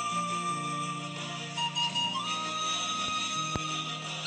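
Orchestral film score: a held woodwind melody, flute-like, over low sustained notes. The melody changes pitch about two seconds in.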